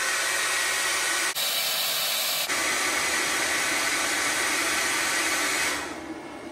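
Handheld hair dryer blowing hot air steadily onto a lithium battery's BMS temperature sensor to trigger its high-temperature cutoff. Its hiss thins for about a second early on, then returns, and the dryer stops near the end.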